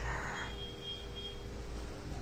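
Low steady background hum of a room, with a faint thin high tone from about half a second to a little past one second.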